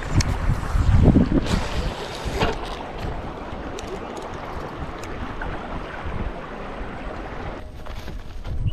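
Wind buffeting the microphone: a steady rushing noise with gusty low rumbles, loudest about a second in.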